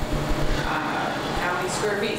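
A person speaking over a steady low rumble of room noise.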